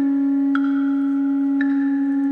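Contemporary chamber music: one low note held steadily, with struck, bell-like mallet percussion notes that ring out twice, about half a second and about a second and a half in.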